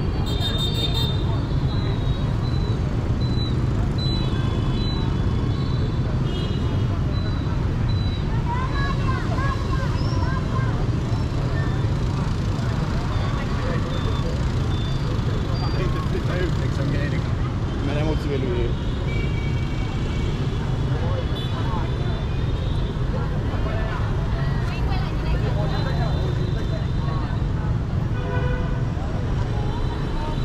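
City street ambience: a steady rumble of traffic and motorbikes, with people talking and occasional short horn toots.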